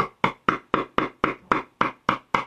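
Wood chisel being tapped rapidly and evenly into a poplar guitar body, about four to five sharp strikes a second, each with a short ring, chipping out the neck pocket.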